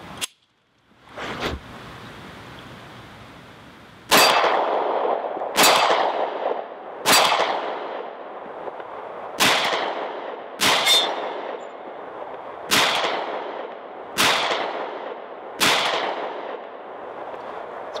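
Para Ordnance Expert Commander 1911 in .45 ACP fired at a slow steady pace, about nine shots roughly a second and a half apart starting about four seconds in, each followed by a long echoing ring. Before the shooting, two metallic clacks as a fresh magazine is seated and the slide closes.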